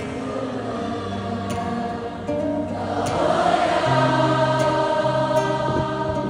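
Live concert music played loud through the hall's speakers, with held sung notes over a stepped bass line, recorded on a phone among the audience. It swells and grows louder about three seconds in.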